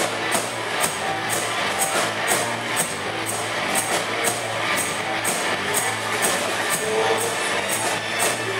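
Live rock band playing an instrumental passage: a drum kit with a cymbal struck about twice a second, over bass guitar, electric guitar and keyboard.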